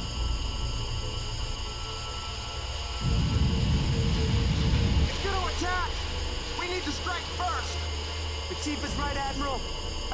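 Film sound effect of a piercing sonic attack: a sustained, high, multi-toned ringing drone. A heavy rumble swells about three seconds in and cuts off suddenly two seconds later. After that, people cry out and groan in pain over the drone.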